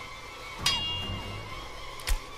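A single metallic clink of a machete blade being tapped against metal, with a ringing high tone that fades over about half a second, about two-thirds of a second in. Soft background film music plays underneath.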